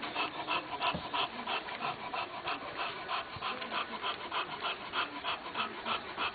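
A pile of 19-day-old English Bulldog puppies making a continuous run of soft, short little sounds, several a second.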